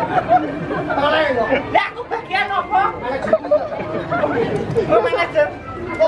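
Speech: voices talking back and forth, with no music.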